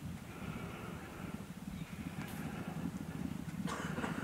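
Racehorses galloping on turf, their hoofbeats a dense low drumming that grows steadily louder as the horses approach.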